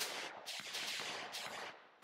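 Gunfire: a quick, uneven string of four or five shots, each with an echoing tail.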